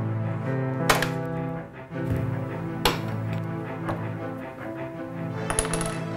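Background music of sustained, held tones, crossed by a few sharp knocks and clinks: the loudest about a second in, others about three and four seconds in, and a quick cluster near the end.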